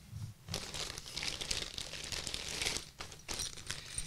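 Small clear plastic hardware bags crinkling as they are handled and opened, in irregular rustling spells with a few light ticks.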